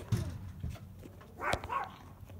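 A dog barking: a short bark in two parts about one and a half seconds in, with a sharp knock just after the start.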